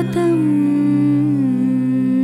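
Devotional hymn singing: a single voice holds one long note that slides slowly downward, over a steady drone.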